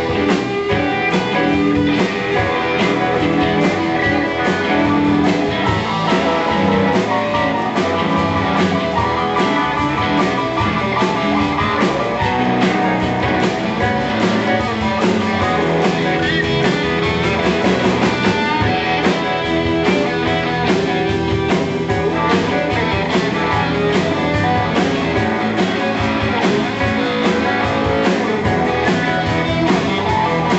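A live blues band playing an instrumental passage, electric guitar to the fore over drums and keyboard.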